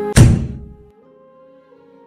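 A single heavy thud sound effect, like a rubber stamp slammed down, just after the start, cutting off the intro music; a faint held note fades quietly after it.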